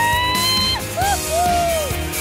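A person whooping with joy in a high voice: one long rising call, then a short one, then a longer one that falls away at the end, over background music.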